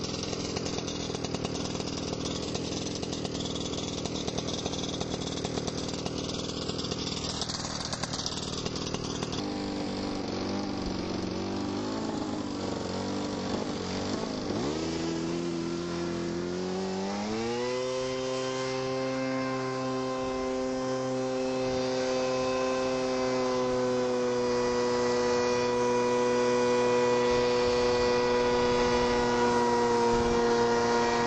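PowerPod paramotor's engine and small ducted fan running at low throttle. Its pitch wavers, then rises sharply a little past halfway as it is opened up to full power for takeoff. It settles into a steady high drone that grows slowly louder.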